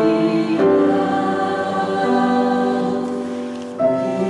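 Mixed church choir singing held chords in harmony, the chord changing about half a second in and again near two seconds, then easing off before a new chord comes in near the end.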